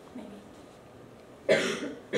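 A person coughing: one sudden, loud cough about one and a half seconds in, lasting under half a second.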